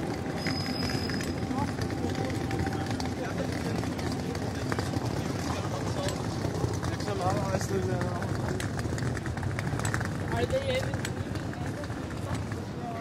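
Busy city street ambience: passers-by talking as they walk by, over a steady hum of traffic and footsteps on the pavement.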